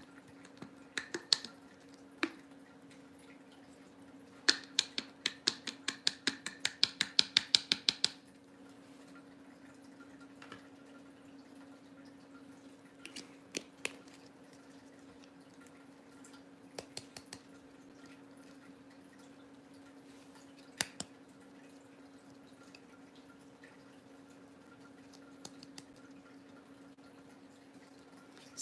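Small plastic craft items and glitter bottles handled on a tabletop: a few light clicks, then a run of quick taps at about five a second for nearly four seconds, then occasional single clicks, over a steady low hum.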